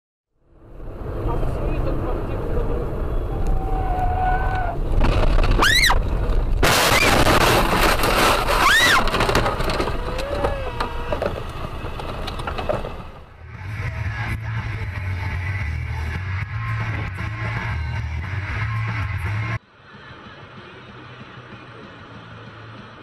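Dashcam audio of road crashes: car and road noise with voices crying out, and a very loud burst of noise a few seconds in that fits an impact and breaking glass. After that comes a steady low hum of engine and road noise inside a car. It cuts off suddenly near the end to quieter road noise.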